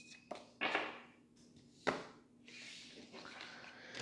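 Tarot cards being picked up and gathered off a cloth-covered table: a few light taps and short slides of cards, then a soft rustle of the cards being handled near the end.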